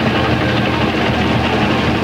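Thrash metal band playing loud: heavily distorted electric guitars over drums, a dense, unbroken wall of sound.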